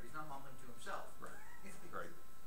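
A class member speaking a comment away from the microphone, the voice rising and falling in pitch.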